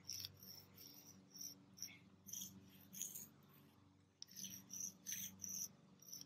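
Faint, irregular scratchy scuffs of chalk pastel being rubbed and blended by hand into a rough asphalt driveway, with a single sharp click about four seconds in.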